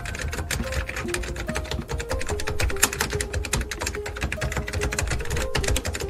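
Rapid keyboard-typing sound effect, a dense run of clicks, over electronic background music with a few held melody notes.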